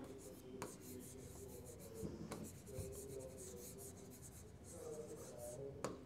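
A pen or stylus writing on an interactive whiteboard screen: faint scratching and rubbing strokes, with a couple of light taps.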